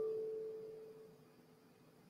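A single ringing musical tone, sounded just before, dying away over about a second and a half.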